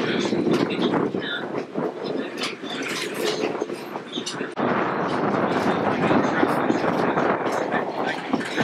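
Steam excursion train running on the track, heard from aboard one of its cars: a dense rattle and clatter of wheels and cars. About four and a half seconds in there is an abrupt change to a steadier, louder stretch of the same running noise.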